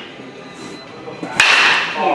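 A baseball bat hitting a pitched ball in batting practice: one sharp, loud crack about one and a half seconds in, with a short ring after it.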